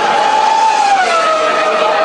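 Loud crowd of partygoers with dance music. The bass drops out, and a long held note slides slowly down in pitch, with a second, higher note joining about halfway through.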